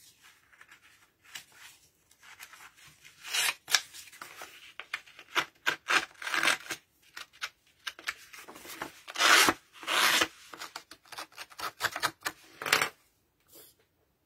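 Handled ink blending tool rubbed along the cut edges of a cardstock tree trunk to ink them: a series of irregular scratchy rubbing strokes, with the paper handled and turned between them.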